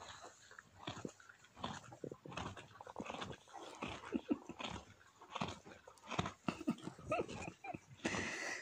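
A foal sniffing and snuffling right at the microphone as it nuzzles it, with irregular soft clicks and rustles throughout and a couple of short squeaky sounds near the end.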